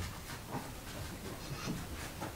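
Quiet room tone with a steady low hum and a few faint, soft knocks.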